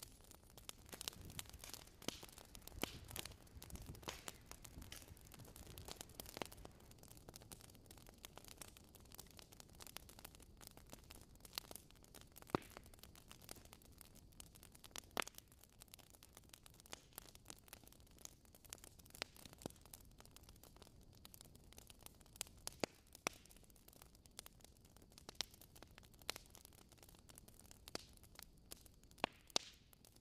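Small wood fire in a mini wood stove crackling faintly: sparse sharp snaps and ticks over a low hiss, a little busier in the first few seconds.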